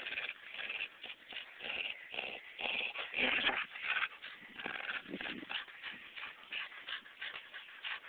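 A blue merle Australian shepherd vocalizing in a rapid, irregular run of short noises while tugging hard on a rope toy during tug-of-war play. The noises are loudest a little past three seconds in.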